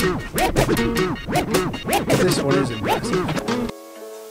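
Background music with turntable scratching: quick back-and-forth record sweeps over a beat. About three and a half seconds in it cuts off and gives way to a quieter piece of held piano-like notes.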